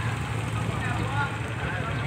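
Motorcycle engines of waiting passenger tricycles idling in a steady low drone, with several people talking in the background.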